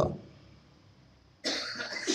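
A man coughing close to a microphone, starting about one and a half seconds in after a short quiet pause.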